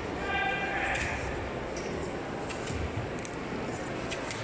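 Background murmur of voices in a large sports hall. A short, steady-pitched shout comes about a quarter second in, followed by a brief burst of noise, with a few faint knocks later.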